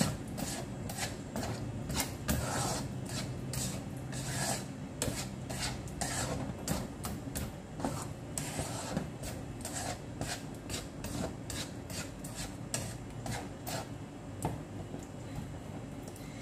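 A spatula scraping and stirring thick, cooking tomato and plum chutney around a wok. It makes repeated rasping strokes, a couple a second, unevenly spaced.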